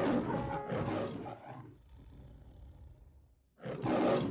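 A roar sound effect for an MGM-style parody logo, fading out over about two seconds, followed by a short silence; music starts near the end.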